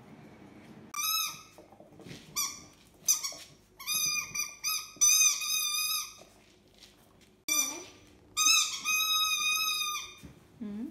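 A squeaky dog toy squeaking about eight times as a puppy chews it. Each squeak is high and steady in pitch, some short and some held for about a second.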